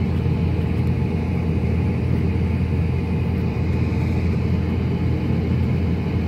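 Combine harvester engine running steadily, heard from inside the cab: a constant low rumble.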